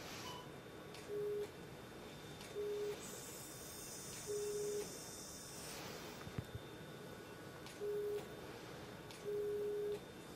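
Electrosurgical generator sounding its single-pitch activation tone five times in short beeps, each beep marking the energy instrument being fired on tissue; the last beep is the longest. A hiss runs for a few seconds in the middle.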